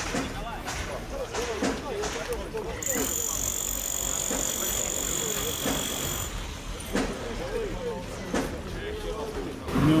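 Several people's voices talking at once in the background, none of the words clear. A steady high-pitched tone sounds over them for about three seconds in the middle, and there are a few sharp knocks near the end.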